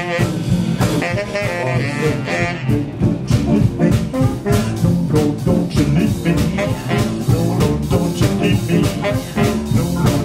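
Live jump-blues and swing band playing an instrumental passage: saxophones and trumpet over drum kit, upright bass and piano in a steady swing rhythm. The horn lines stand out in the first few seconds, then the drums and cymbals come forward.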